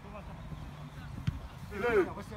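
Sounds of an amateur football match on an artificial pitch: a low rumble, one dull thud about a second in, and a man's shout beginning near the end.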